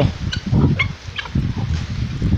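A flock of backyard chickens clucking in short, scattered calls as they are fed, over a low rumble.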